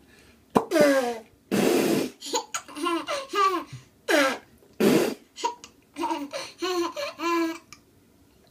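A toddler giggling in a string of short, high-pitched bursts, with a few sharp breathy catches between them: hiccuping giggles.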